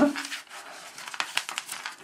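Paper rustling and crinkling as a LEGO instruction booklet is handled and its pages are leafed through, a quick irregular run of small crackles.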